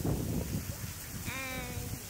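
A child's voice giving one short, high-pitched drawn-out sound a little past a second in, over a low rumble of wind on the microphone.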